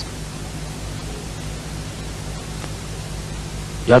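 Steady recording hiss with a low electrical hum, the background noise of a sermon's sound system during a pause in the preaching.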